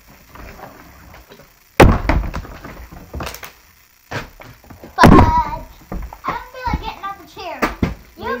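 Plastic water bottles flipped and landing on a tabletop: about five sharp thuds, a second or more apart.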